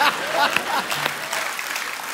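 Studio audience applauding, with a few voices heard over the clapping.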